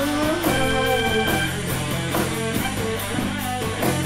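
Live rock band playing an instrumental stretch between vocal lines: electric guitar to the fore over drums and bass.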